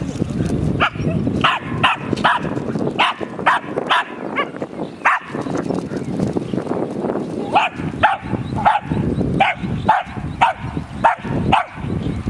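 A Scottish terrier barking in short, sharp yaps, about two a second, with a brief pause around the middle.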